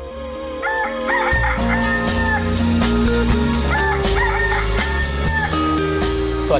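Theme music with a held synth note and bass, with a rooster crowing over it twice, about three seconds apart.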